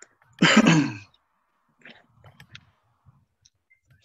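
A man's brief non-word vocal sound, lasting under a second, followed by a few faint computer-mouse clicks, heard over a video call.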